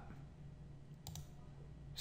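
A quick pair of faint clicks from computer use about a second in, over quiet room tone.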